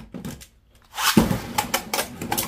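Beyblade X spinning tops picked out of the plastic stadium with a few light clicks. About a second in, a fresh launch lands them in the bowl with a sudden clatter, then they clash and scrape against each other and the stadium in a rapid run of sharp plastic-and-metal clicks.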